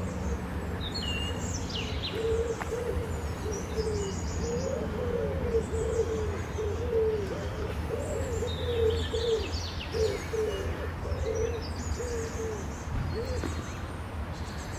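A pigeon cooing over and over in a long run of soft, low notes, with high bird chirps and peeps scattered over it and a steady low hum beneath.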